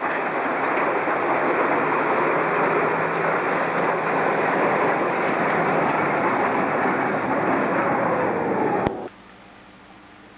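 Rack railway train moving off and away, a steady dense running noise. The sound cuts off suddenly about nine seconds in, leaving only a faint low hum.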